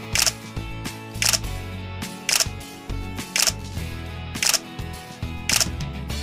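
Background music with a camera-shutter click sounding six times, about once a second.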